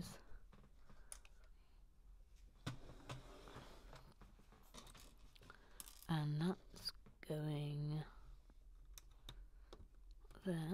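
Small plastic Lego bricks clicking and rattling as pieces are picked out and pressed onto a model. Two short wordless voice sounds a little past the middle are the loudest part.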